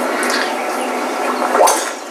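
A golf club striking a teed ball on a tee shot: one sharp crack about one and a half seconds in, over a steady hiss of outdoor background noise.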